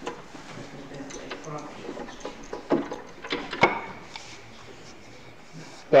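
Knocks and clicks of wood against metal as a turned wooden rolling pin is released and taken off a stopped wood lathe. A few sharp knocks come a little past halfway, the last the loudest, followed by a faint ring.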